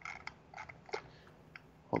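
Computer keyboard and mouse clicking in short, scattered taps over the first second while someone searches through browser bookmarks, then a man's voice begins near the end.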